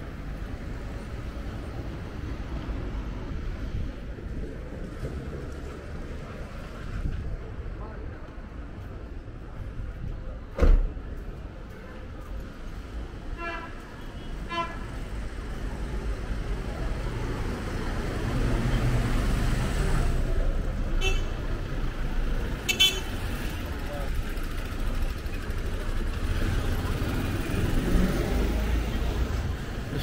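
Street traffic with a steady low rumble of passing cars. A few short car-horn toots sound, two close together about halfway through and more later. A single sharp knock comes about a third of the way in.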